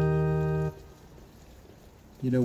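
Electronic keyboard on an organ voice holding the closing chord of a hymn. The chord is steady, with no decay, and is released abruptly about two-thirds of a second in.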